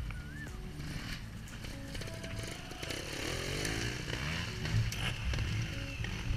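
Small trials motorcycle engine revving on a climb, rising in pitch about three seconds in, over background music.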